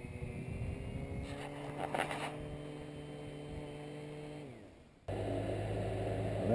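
Small quadcopter's electric motors and propellers whirring at a steady pitch while it sits landed in the grass, then winding down and stopping a little over four seconds in. After an abrupt cut about five seconds in, a louder steady motor hum begins.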